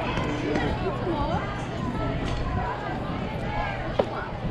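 Distant voices and chatter from players and spectators over a steady low background rumble, with one sharp smack at the very end.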